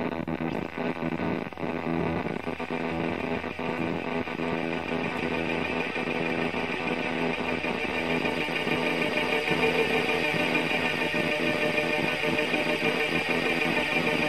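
Electric guitar played through effects pedals: a few picked notes in the first seconds give way to a sustained, echoing wash of tones that slowly grows louder.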